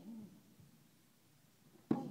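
A strike landing on handheld Thai pads with one sharp smack and a short echo near the end. Before it, the tail of a short hooting vocal call that bends in pitch fades out at the start.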